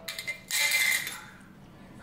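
A metal spoon clinking and scraping in a glass jar: a few light clicks, then a short scrape about half a second in.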